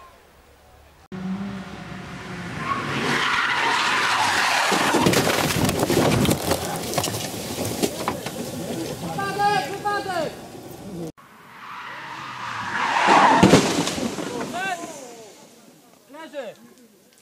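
Rally car (BMW E46) racing past at full throttle with tyres skidding and loose gravel crackling. It is heard as two separate passes, and the second builds to a loud peak. People shout after each pass.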